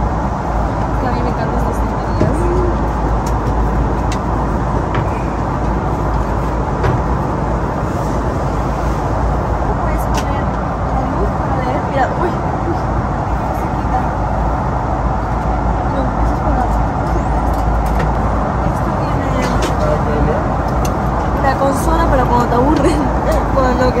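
Steady cabin noise of an airliner in flight, engine and airflow noise with a strong low rumble that does not change.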